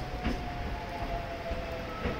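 Hakone Tozan Railway 3000-series electric train creeping slowly into the platform: a steady high whine over a low rumble, with a single click about a quarter second in.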